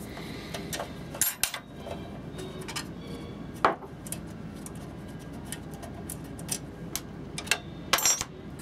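A steel expansion-slot cover being unscrewed and worked loose from an NCR 286 PC's case with a screwdriver: scattered light metal clicks and clinks, with a small cluster about a second in and the sharpest clack a little over three and a half seconds in.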